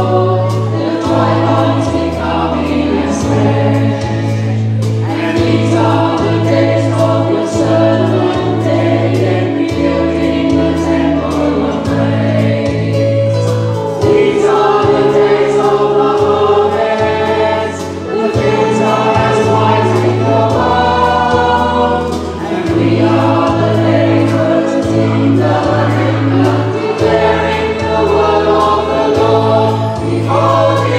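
A choir singing a Christian song over instrumental accompaniment, with a bass line that changes note every second or two.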